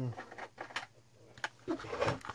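A few light clicks and taps of copper stripboard circuit boards being picked up and handled on a cutting mat.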